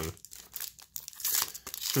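Foil wrapper of a Magic: The Gathering booster pack being torn open and crinkled by hand, the crackling getting louder in the second half.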